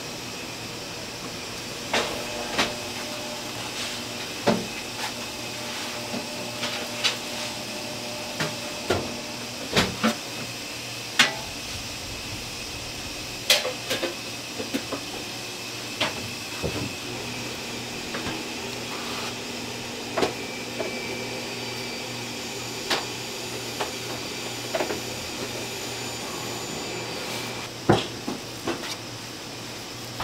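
Hand dumpling-making at a steel filling tray and aluminium steamer: a metal spatula clicks and knocks against the metal trays in irregular sharp taps, about one every second or two, over a steady hum.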